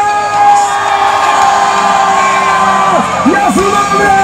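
Live worship music played loud through the stage's PA, with held sung notes and the crowd whooping and cheering. A few falling whoops come about three seconds in.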